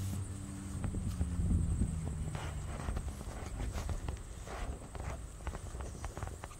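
Footsteps on grass from someone walking while filming, a scatter of soft, irregular thuds. A low steady hum runs under them for the first half and fades out about halfway through.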